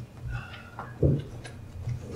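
Soft clicks and knocks of equipment being handled, with a louder low thump about a second in.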